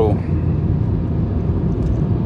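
Car's engine and road noise heard from inside the cabin, a steady low rumble as the car drives uphill.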